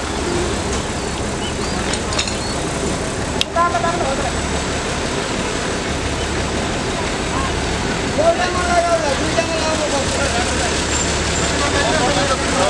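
A heavy truck's engine running steadily, with people talking over it now and then.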